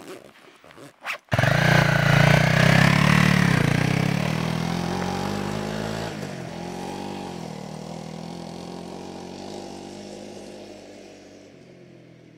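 A brief zipper sound, then an adventure motorcycle's engine starts loud about a second in and rides off along a gravel road. It fades steadily as it goes into the distance, with a change in engine note about halfway through.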